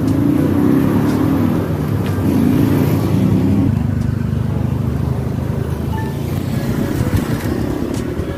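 A motor vehicle engine running close by: a steady, loud low hum whose pitch shifts about halfway through.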